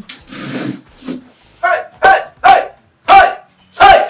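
A dog barking, a run of short barks about one to two a second, starting about one and a half seconds in.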